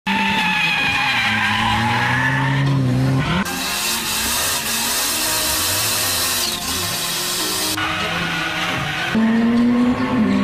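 Drifting car sounds: an engine tone rising in pitch for the first few seconds, then a loud hissing tyre skid of about four seconds that starts and stops abruptly, then the engine tone again near the end.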